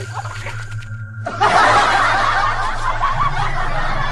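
Loud laughter from several voices, snickering and chuckling, breaking in abruptly about a second in and continuing, over a low steady hum.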